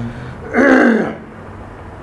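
A man clearing his throat once, about half a second in, for about half a second.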